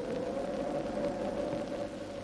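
Overlaid film soundtrack: one held note that slowly fades, over a steady hiss.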